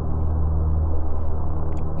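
A steady, low, droning background sound bed: deep held tones under a rumbling haze, with no beat.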